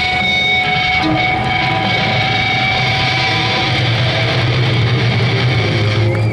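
Electric guitar feedback through stage amplifiers: two long, steady whining tones held over a low rumbling hum, with no strumming or drumbeat.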